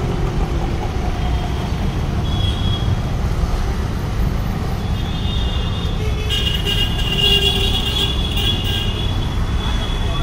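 Street traffic: a steady low rumble of passing vehicles, with a vehicle horn sounding briefly about two and a half seconds in and a longer stretch of honking from about five seconds on.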